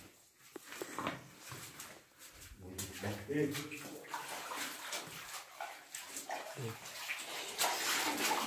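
A person laughs briefly about three seconds in, amid faint scattered clicks and rustling from movement.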